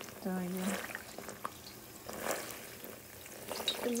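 A pua sweet batter cake deep-frying in hot oil in a wok, sizzling as a perforated skimmer presses it down into the oil. A brief hummed voice sound about half a second in.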